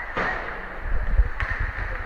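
Ice hockey play in a rink: a short rush of noise near the start and a single sharp knock about a second and a half in, over a low steady rumble.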